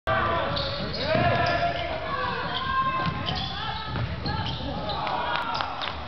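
Basketball bouncing on a hardwood gym floor during play, with several people talking and calling out in the echoing gym.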